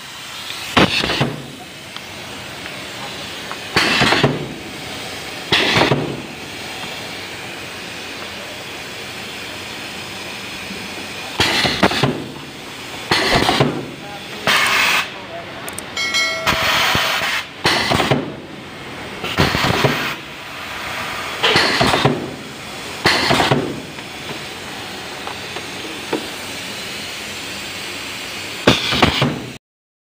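Pneumatic cable insulation cutting machine cycling: about a dozen short bursts of air hiss at irregular intervals over a steady workshop background noise.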